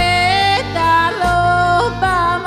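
Live folk-rock band music with accordion and bass guitar, a melody of held notes stepping quickly up and down over a steady bass line.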